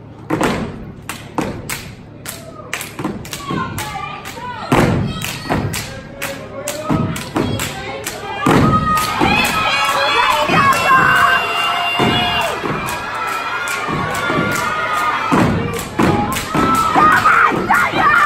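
A step team stomping and clapping on a wooden stage, a fast, uneven run of sharp stomps and claps throughout. Voices shout and cheer over the beats through the middle stretch.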